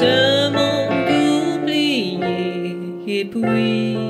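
A woman singing a French chanson, holding long notes, accompanied by a digital piano.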